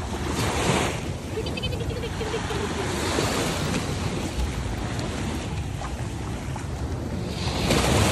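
Small sea waves washing up and running back over the sand, with a steady rush and two louder surges, about half a second in and near the end. Wind rumbles on the microphone throughout.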